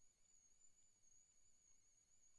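Near silence: faint room tone with a thin, steady high-pitched tone.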